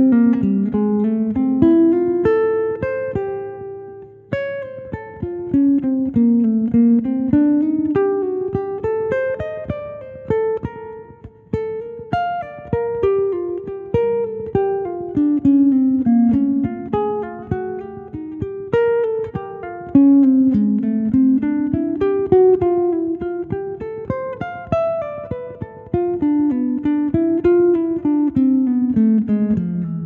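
Nylon-string Godin electric-acoustic guitar playing a single-note jazz improvisation, quick runs of plucked notes rising and falling over ii–V chord changes. There are brief gaps between phrases about four and eleven seconds in.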